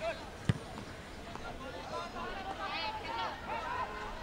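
A single sharp thud about half a second in: a goalkeeper's kick striking the football. Shouting voices carry across the pitch.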